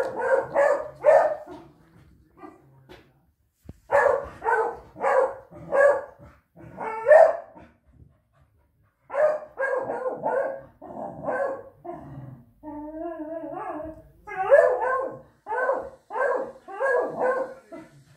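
Dog barking over and over in quick volleys of three to five barks, with a drawn-out, wavering whining cry about two-thirds of the way in.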